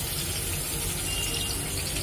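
Tomato pieces frying in hot oil in a steel kadai: a steady sizzling hiss.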